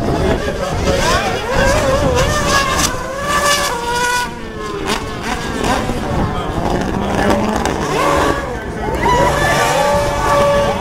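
A Mercedes Formula 1 car and a Ford Fiesta rally car drifting through a corner, their engines revving with the pitch rising and falling, along with tyre noise.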